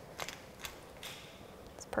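Hand pepper mill grinding black peppercorns: a few faint crackling clicks from the grinding mechanism.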